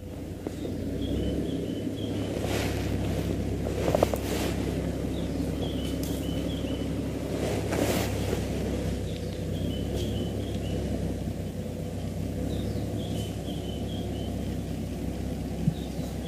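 Game-drive vehicle's engine idling with a steady low rumble, while a bird gives a short high chirping call every few seconds.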